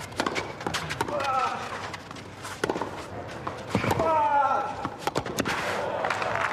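Tennis rally: several sharp racket-on-ball strikes about a second apart, with a player's grunts on some of the shots.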